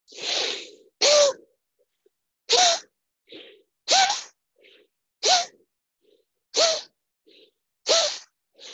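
A person doing forceful rhythmic yoga breathing: a long breath to begin, then a sharp exhaled burst with a short voiced 'ha' about every second and a quarter, with quick quiet inhales between.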